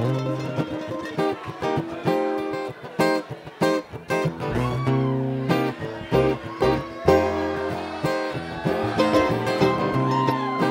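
Live bluegrass string band playing an instrumental intro: acoustic guitar strumming and picked mandolin, banjo and fiddle lines over upright bass.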